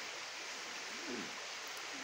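A steady, even hiss of outdoor background noise, with faint distant voices underneath.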